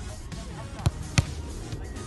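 Two sharp thuds of a football being kicked, about a third of a second apart.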